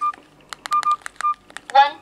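Buttons on a Fly Ezzy 5 big-button mobile phone being pressed: quick plastic key clicks and three short keypad beeps. Near the end the phone's talking keypad voice reads out the first digit, 'one'.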